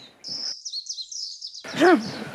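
Birds chirping: a quick run of high, gliding chirps lasting about a second and a half, cut off when a man's voice comes in near the end.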